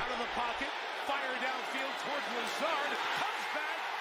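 Televised NFL game audio: a play-by-play commentator talking, quieter than the nearby voice, over steady stadium crowd noise.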